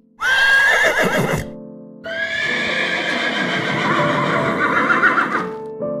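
A horse neighing twice: a short whinny, then a longer one about two seconds in that quavers toward its end.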